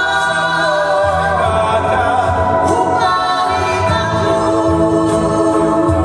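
Live vocal-group performance: male and female voices singing together in harmony, holding long notes over a band accompaniment with a steady low bass.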